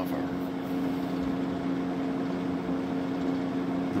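A steady machine hum at a few fixed low pitches, with a faint hiss behind it.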